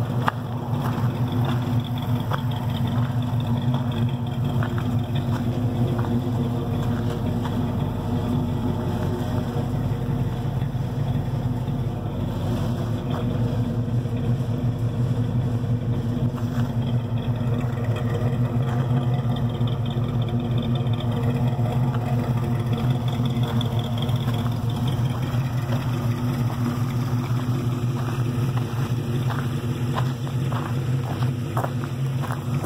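Truck engine running steadily at idle, an even low-pitched hum with no revving.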